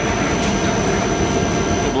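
A Kannegiesser flatwork ironing line and its feeding machine running, giving a steady, even machine noise. A thin high whine sits above it and stops near the end.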